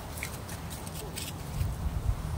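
Footsteps crunching through dry fallen leaves in a few short crackles, over a steady low rumble on the phone's microphone.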